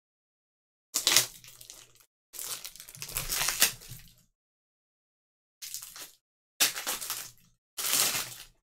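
Trading card foil packs and cards being handled and torn open, crinkling and rustling in five separate bursts, each cutting off sharply.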